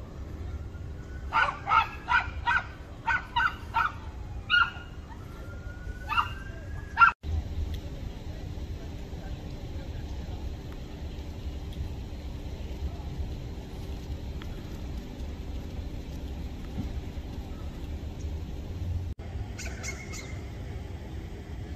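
A dog barking: a quick run of about seven sharp barks, then two more spaced out. After a break, a steady low street hum.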